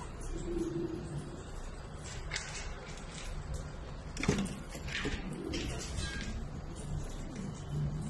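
Shami pigeons cooing, low coos coming again and again, with a few brief scuffs and one sharp knock a little after the middle, the loudest sound.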